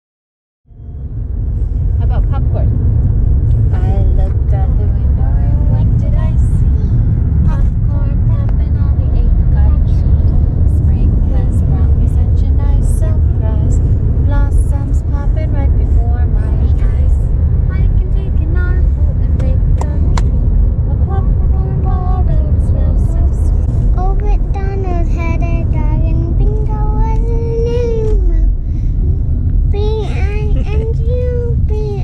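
Steady low rumble of road and engine noise inside a car's cabin while riding. A small child's voice babbles faintly over it, clearer in the last few seconds.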